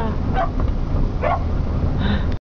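An excited dog in a pickup truck's bed barking twice, short high yips about half a second and a second and a quarter in, over the steady low hum of the truck's idling engine.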